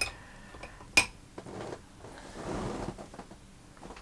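Makeup brushes knocking against a ceramic dish as they are handled: a sharp click at the start and another about a second in, then soft rustling.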